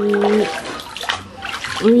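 Water sloshing and splashing as a hand swishes through a basin of water to wash a toy.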